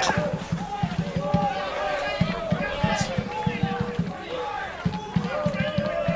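Indistinct voices at an outdoor football match, players or spectators calling out, with many irregular low thumps throughout.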